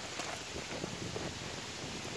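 Faint steady rustling, with light crunches of footsteps through dry leaves and grass.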